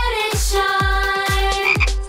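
Cartoon frog croaking over a children's song backing track with a steady drum beat.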